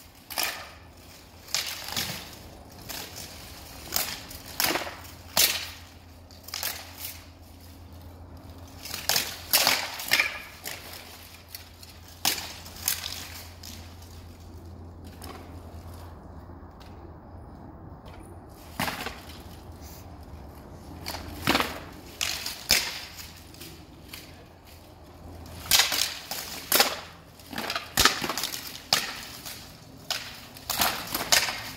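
Swords clashing and striking steel plate armour in an armoured sparring bout: irregular sharp metallic hits, often several in quick succession, with a lull of a few seconds midway. A steady low hum runs underneath.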